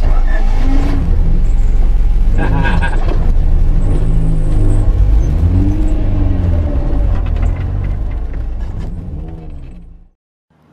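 Honda four-cylinder cars accelerating hard from a standing drag-race launch. The engine pitch climbs and drops several times as gears change, and the sound fades away near the end.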